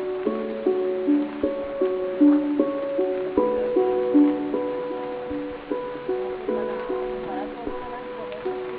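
Background music: a simple melody of short notes in a steady rhythm.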